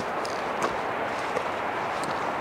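Footsteps on a gravel mountain path, a few faint crunches, over a steady rushing background noise.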